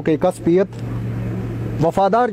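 A man reciting verse in Shina, pausing for about a second in the middle. During the pause only a steady low hum and faint background noise can be heard.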